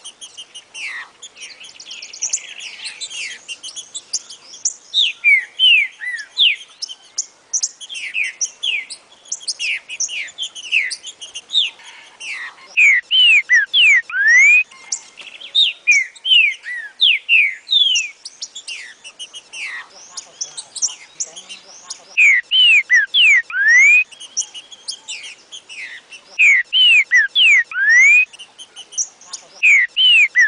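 Green-winged saltator (trinca-ferro) singing: phrases of loud, clear whistled notes that sweep up and down, repeated in bursts with short pauses. This is a rare song variant of the species. A constant high chirping runs behind it.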